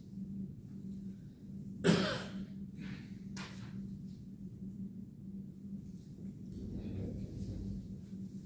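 A person coughs sharply about two seconds in, then more softly a moment later, over a steady low hum and room noise.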